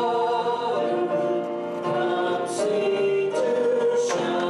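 A group of voices singing a slow worship song together, each note held about a second before moving to the next.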